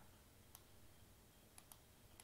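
Near silence broken by faint computer mouse clicks: a single click about half a second in, then three quick clicks close together near the end.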